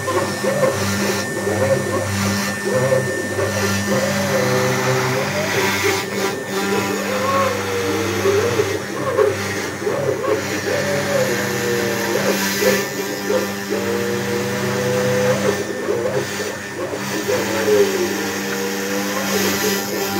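Sphinx CNC router carving a pattern into fibreboard: the spindle runs with a steady hum and a constant high tone, while the stepper motors whine in shifting, gliding pitches as the machine moves the bit along the carving path.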